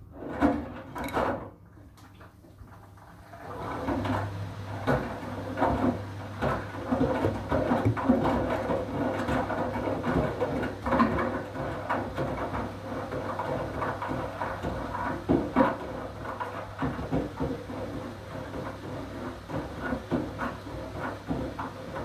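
Siemens front-loading washing machine on a wool cycle: two knocks in the first second and a half, then from about four seconds in the drum turns with a steady motor hum and continuous clattering and knocking as the load, among it a cloth bag of clothespins, tumbles in the wet drum.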